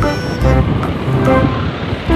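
Background music of held melodic notes over a low bass line.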